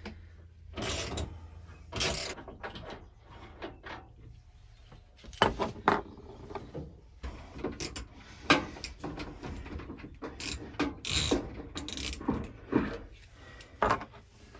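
Ratchet socket wrench clicking in short irregular runs as it unscrews the transit bolts from the back of a washing machine.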